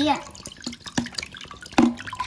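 Coconut water running out of a cut-open green coconut into a stainless steel pot already part full, splashing and dripping with separate plops into the liquid.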